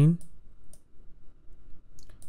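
A man's voice trails off at the start, then a quiet stretch with a couple of faint computer-mouse clicks.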